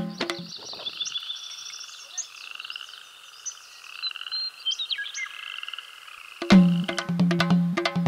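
Drumming music stops about half a second in, leaving a wildlife chorus of high chirps and rapid trills with a few short gliding calls; the drumming comes back in near the end.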